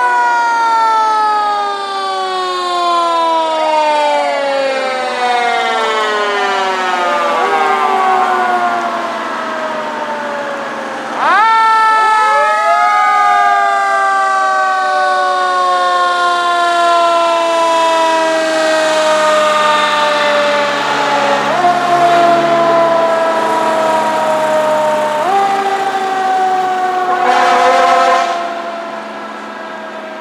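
Fire engine siren wailing: its pitch slides slowly downward, winds sharply back up about eleven seconds in, and is pushed up briefly twice more before dying away near the end. A brief noisy blast sounds just before it fades.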